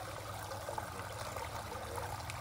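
Water in a koi pond trickling steadily, with a low steady hum underneath.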